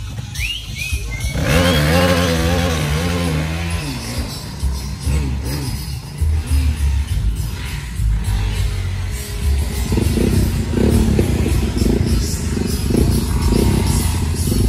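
Music playing together with the engine of a quad ATV riding through a muddy creek. The engine note wavers up and down for a couple of seconds before the sound settles, and a regular beat comes in toward the end.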